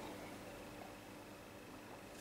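Quiet room tone with a faint steady hum; no distinct sound stands out.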